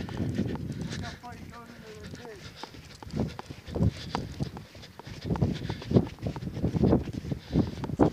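Footsteps in snow, about two steps a second, starting about three seconds in, with faint voices in the first couple of seconds.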